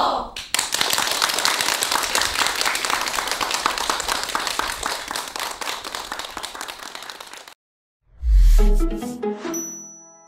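Studio audience applauding, fading away after about seven seconds. After a brief silence, a short jingle starts with a deep low hit and then chiming, bell-like notes.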